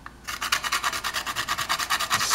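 A whole nutmeg being grated by hand on a small flat metal nutmeg grater: quick, even rasping strokes, starting about a quarter second in.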